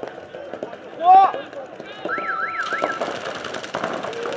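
A loud shout about a second in, then an electronic start signal about two seconds in: a tone that warbles up and down three times and then holds steady. Straight after it, rapid paintball marker fire starts up, a dense crackle of many shots that runs on.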